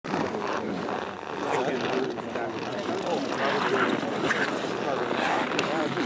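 Indistinct talking of several people's voices, no words clear, over a steady background rush.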